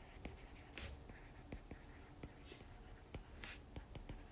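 Faint taps and light scratches of a stylus writing on a tablet's glass screen: a string of small, irregular ticks as the words are written.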